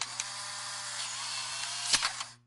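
A steady, static-like electrical buzz with a low hum, used as an editing transition effect. It ends in a sharp click near the end and cuts off shortly after.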